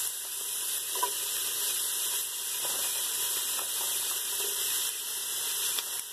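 Chopped vegetables sizzling in olive oil in a pot on the stove, a steady hiss, with a few faint light knocks as chopped celery is tipped in.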